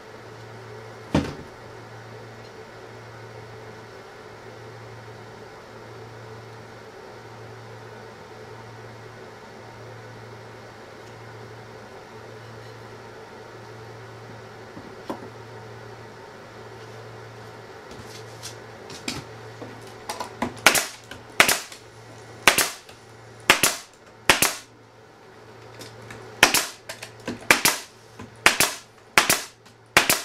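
Pneumatic staple gun firing staples into pine spacer strips on a wooden bat house: about a dozen sharp shots at uneven intervals, starting about 18 seconds in. Before that, one sharp knock about a second in over a steady low hum.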